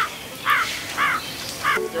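A crow cawing four times: short arched calls about half a second apart.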